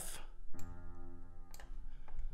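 Software piano (FL Keys) sounding a single low F as the note is drawn into the piano roll, ringing on and fading for about a second. A short click comes near the end.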